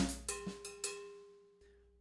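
Drum kit with an LP salsa cowbell: the last few quick strokes of a short funk figure on hi-hat, cowbell and snare, then a ringing note that fades out within about a second.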